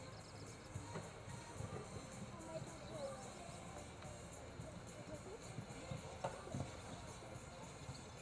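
Show-jumping horse cantering on a sand arena: irregular, dull hoofbeats, with two sharper knocks a little past six seconds in.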